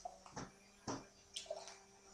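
Beer being poured from a bottle into a glass: faint gurgling with a few short glugs and clicks.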